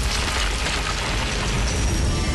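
Cartoon sound effect of a giant metal machine breaking up through the ice: a rumbling crash with a burst of noise strongest in the first second.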